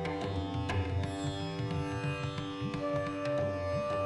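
Indian-style instrumental background music: plucked strings sliding between notes over a drone, with tabla drum strokes whose low pitch bends.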